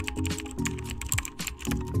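Computer-keyboard typing sound effect: a quick, irregular run of key clicks over background music.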